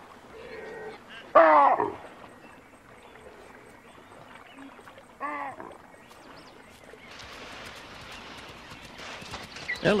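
Two short, pitched animal calls, the first loud and falling in pitch at about a second and a half in, the second fainter at about five seconds in, over a faint background hiss.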